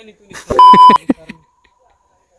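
A loud electronic beep, one steady high tone lasting about half a second, laid over a man's speech, with a faint trace of the same tone carrying on for about a second after it. The pattern is typical of a censor bleep added in editing.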